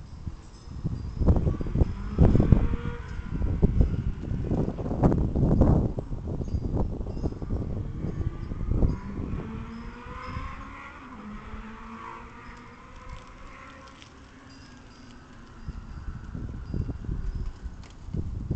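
Wind buffeting the microphone in gusts, heavy for the first six seconds, dying down through the middle and picking up again near the end, with faint steady tones heard in the quieter stretch.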